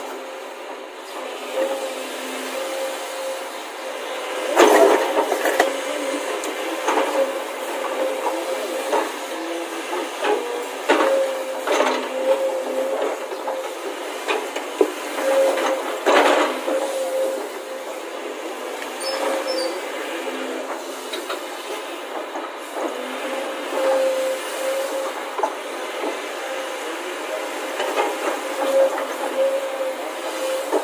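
Dry wooden sticks knocking and clattering against hard plastic toy vehicles as they are loaded by hand into a toy truck's bed, with scattered sharp knocks, the loudest about four to five seconds in and around sixteen seconds in. Under them runs a steady hiss with a faint hum.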